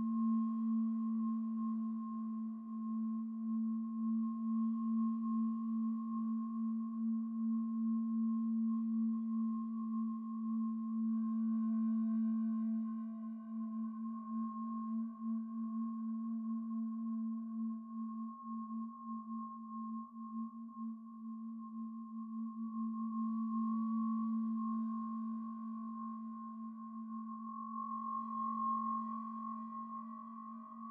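Sustained feedback drone from the Empress Zoia Euroburo's Feedbacker patch, a reverb fed back into itself through a chain of bell filters: a steady low tone under a fainter high ringing tone. Higher overtones fade in about halfway through and again near the end as the patch is played.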